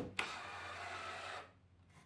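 Cordless drill-driver running for just over a second as it works into a timber batten, starting with a sharp click and cutting off suddenly.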